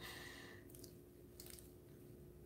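Near silence: room tone with a faint steady hum and a few faint, brief rustles.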